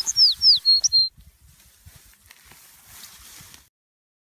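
Small bird chirping: a quick run of high notes, several sliding downward, ending about a second in. Faint rustling follows, then the sound cuts to silence near the end.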